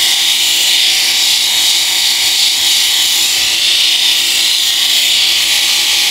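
Electric epilator running with a steady high-pitched buzz as it is worked over the skin of a leg, plucking out the hairs.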